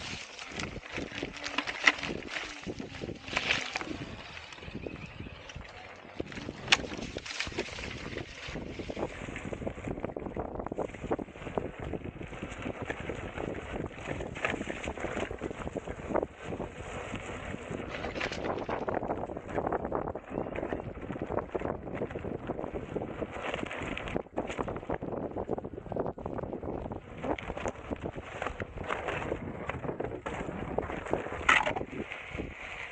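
Wind rushing over the camera microphone during an off-road ride on a Veteran Sherman Max electric unicycle, with scattered knocks and rattles as the wheel and camera rig jolt over the rough dirt trail.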